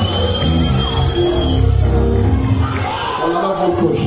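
Live gospel praise-break music from a church band with keyboards, bass and drums, with the congregation shouting and cheering over it. A thin high held tone sounds through about the first second and a half.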